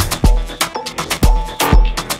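Afro house DJ mix playing: a four-on-the-floor kick drum with deep bass about twice a second under steady hi-hat and percussion strokes.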